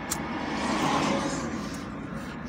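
Road and engine noise of a moving car heard from inside its cabin, swelling slightly and easing off again.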